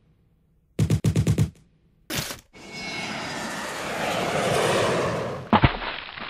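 Cartoon war sound effects: a quick burst of about six machine-gun shots about a second in, then a single sharp crack. A long, swelling rush of noise follows and ends in a loud crash near the end.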